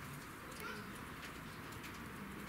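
Faint, low bird cooing over steady background noise.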